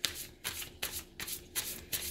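Tarot deck being shuffled by hand: a quick run of short papery swishes, about three a second.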